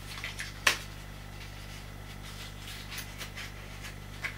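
Light card rustles and small clicks as the glued tabs of a printed-card baby shoe are curled round and pressed into place by hand, with one sharp click a little under a second in. A steady low electrical hum runs underneath.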